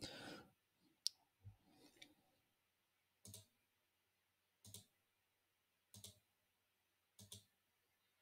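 Faint computer mouse clicks, a single click or a quick pair roughly every second and a half, in an otherwise quiet room.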